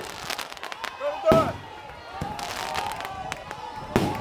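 Aerial fireworks bursting overhead: a few sharp bangs, the loudest about a second in, with crackling between them. People's voices can be heard alongside.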